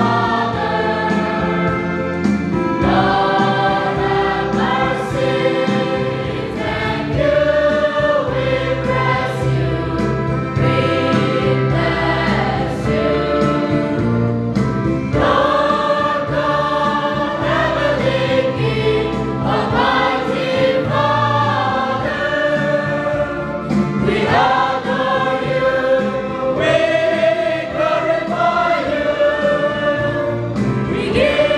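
Church congregation of men and women singing a hymn together in chorus, phrase after phrase, over steady low held notes.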